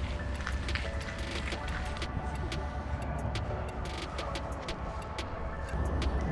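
Steady low outdoor rumble, with many sharp clicks scattered through it.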